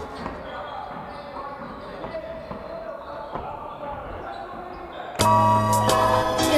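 A basketball bouncing on a wooden gym court in a large sports hall, with players' voices. About five seconds in, loud background music cuts in.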